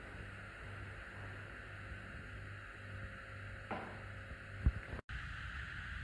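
Quiet room tone with a steady low hum, a faint rustle nearly four seconds in and a small click soon after; the sound cuts out completely for a moment near five seconds.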